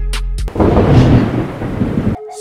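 A loud rumble of thunder, likely an added sound effect, breaks in suddenly about half a second in and carries on, after a brief low, steady music drone.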